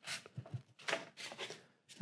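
Faint, soft scuffing of hands pressing and rubbing down on stacked sheets of foam core board, a handful of short brushes, as the top sheet is pressed to leave a line in the one below.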